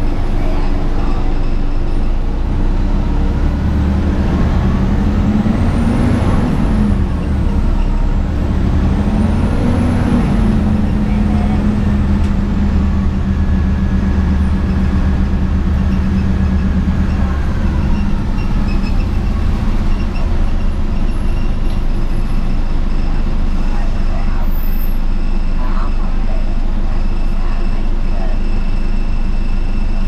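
Cabin sound of a 2004 Gillig Advantage transit bus under way: engine and drivetrain running steadily, with a whine that rises and falls twice, about six and ten seconds in, as the bus pulls away and changes speed. It eases off after the middle.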